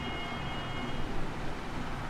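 Steady background hiss and low hum of the room, with a faint high steady whine that fades out about a second in; no distinct sound stands out.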